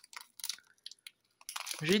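Foil wrapper of a Pokémon booster pack crinkling in short, irregular crackles as it is peeled open by hand; a voice starts speaking near the end.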